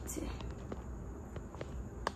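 A few faint, sharp clicks over steady low room noise.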